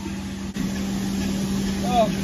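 Automatic car wash equipment running with a steady low hum and the hiss of spraying water, heard from inside a minivan with its windows down. There is a brief drop about half a second in, and then it gets a little louder.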